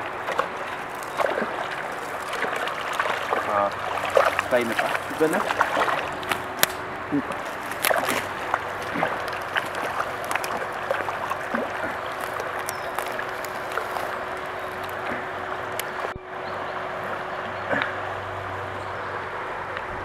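A hooked brown trout thrashing and splashing at the surface of a shallow stream as it is played on a spinning rod, in repeated short splashes through the first half, over the steady rush of the flowing water.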